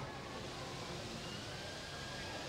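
Faint steady noise with a low hum, with no distinct event standing out.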